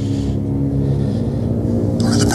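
Low, steady droning rumble of several held low tones, with a soft hiss in the first half-second.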